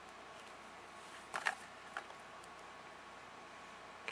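Faint handling noise from a small cardboard parts box: a few short rustles about a second and a half in, then a single click, over quiet room hiss.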